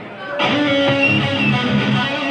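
An amplified electric guitar, played alone, begins a song's intro about half a second in, with strummed chords ringing out.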